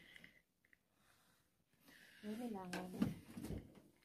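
Near silence in a small room for about two seconds, then a short stretch of a person's voice, without clear words, just past the middle.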